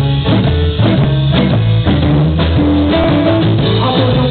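Live blues band playing: a steel guitar, laid flat and played seated, carries held notes that slide in pitch, over electric guitar, a drum kit and a bass line.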